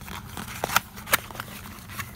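Cardboard and paper packaging handled by hand: rustling and scraping with a few sharp clicks, the loudest ones about three-quarters of a second in and just after a second.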